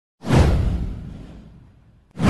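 A whoosh sound effect over a deep low thud, starting suddenly about a quarter second in and sliding down as it fades away over about a second and a half.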